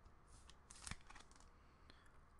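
Near silence with faint rustling and light clicks of trading cards being handled, the clearest just under a second in.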